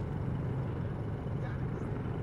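Helicopter flying overhead: a steady low drone of engine and rotors.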